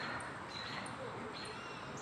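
Faint outdoor ambience: distant bird calls and a short high chirp repeating about every half second over a low background hiss.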